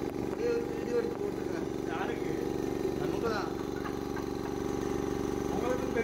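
Small electric air compressor running with a steady motor hum, pumping air into a sterilizer's steam generator to force the trapped water out through the drain.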